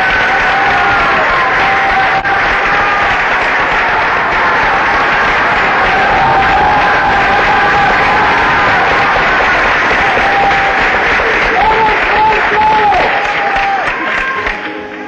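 Opera house audience applauding, with voices calling out over the dense clapping.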